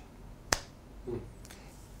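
A single sharp click, like a snap, about half a second in, over quiet room tone.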